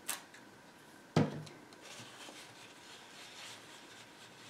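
Paper napkin rubbing and scrubbing on a painted canvas, faint and papery, wiping off acrylic paint softened by oil soap. A short thump sounds about a second in.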